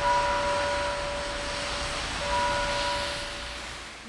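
A passing vehicle's engine noise: a rushing sound with a steady whine, swelling at the start and fading away near the end.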